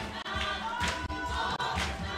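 Church choir of mixed voices singing a gospel song, with hands clapping on the beat about once a second.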